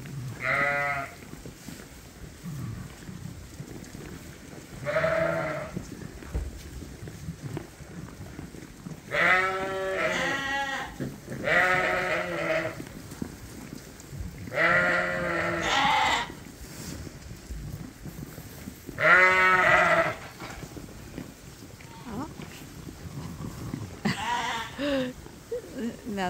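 A ewe bleating over and over, about seven calls a few seconds apart, the loudest about three-quarters of the way through: she is calling her lamb to her.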